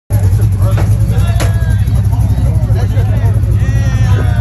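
Pickup truck engine running with a steady, loud low rumble, with people's voices and shouting over it.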